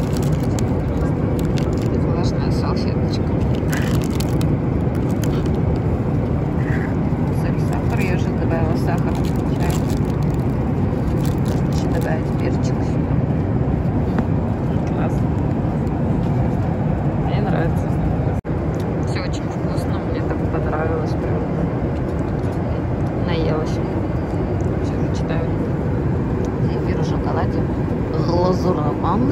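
Steady airliner cabin drone of engine and air noise in flight, with plastic food wrappers crinkling now and then as they are handled.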